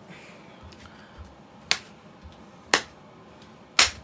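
Three sharp finger snaps about a second apart, in a slow beat.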